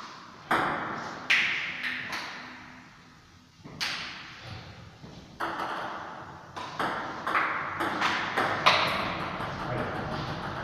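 Table tennis ball clicking off the table and the players' bats, each click trailing a short echo. There are a few scattered clicks at first, then a quicker run of about three a second from about six and a half seconds in as a rally gets going.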